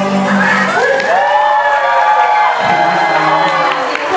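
Live acoustic guitar and ukulele music ending a song, with a long high note that rises and then slides slowly down, while the audience cheers.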